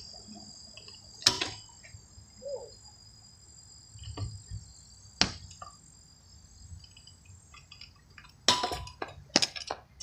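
Insects trilling in a steady high-pitched drone, with a few scattered clicks and a cluster of sharp knocks near the end from a kick scooter on the skate park's concrete.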